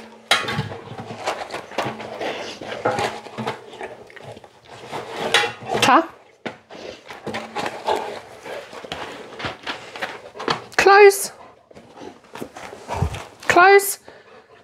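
A dog rummaging in a metal mailbox for the mail: irregular taps, knocks and light clatters as its mouth and the mail bump against the box, with a few brief voice-like calls.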